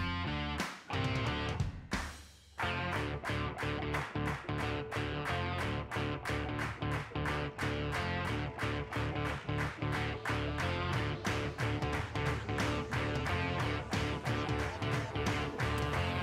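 Background music with a steady beat, led by guitar, cutting out briefly about two seconds in.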